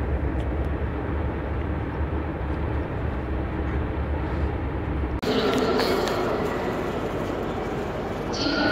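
Steady low rumble of a coach bus's engine and road noise heard from inside the passenger cabin. About five seconds in, it cuts abruptly to the echoing crowd noise of a busy railway station hall.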